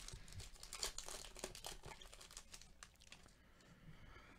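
Faint crinkling of a foil trading-card pack wrapper as the stack of baseball cards is pulled out and handled, a string of small crackles that dies down about three seconds in.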